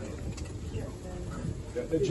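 Indistinct, muffled chatter of a small group of people talking at once, with no clear words.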